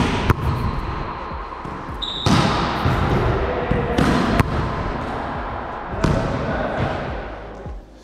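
A volleyball being hit and passed on a wooden gym floor: sharp smacks roughly every two seconds, some in quick pairs, each echoing through a large hall. A short high squeak comes about two seconds in.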